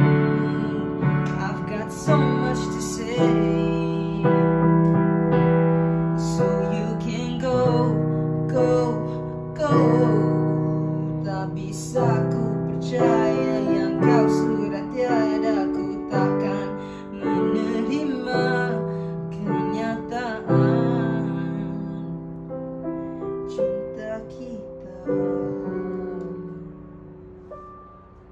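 Digital piano playing a slow pop ballad with chords and melody, each note struck and left to fade, growing softer toward the end.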